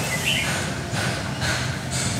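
Steady street background noise with a few short, faint high chirps, one near the start and one about halfway.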